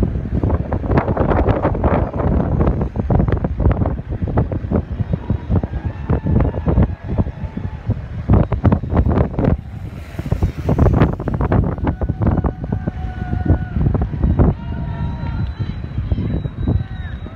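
Wind buffeting the microphone in gusts and thumps, with voices calling out now and then in the second half.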